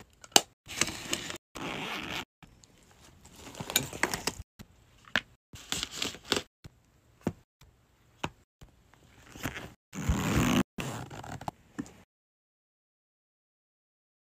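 Close-up handling of makeup packaging and a fabric makeup bag: clicks, taps, scrapes and rustles of plastic cases, such as a false-lash case and an eyeshadow palette, in short bursts cut off abruptly between edits. The sound stops dead about twelve seconds in.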